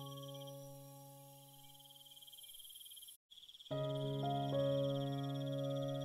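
Soft piano music: a chord dies away, there is a brief silent break, then a new piece enters with sustained piano chords about two-thirds of the way in. A steady, high-pitched chirring of insects runs underneath.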